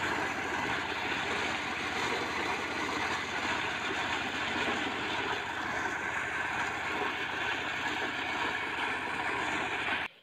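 Portable engine-driven corn sheller running steadily under load as dried corn cobs are fed in and shelled, a dense mechanical clatter over the small engine's fast beat. It cuts off abruptly at the end.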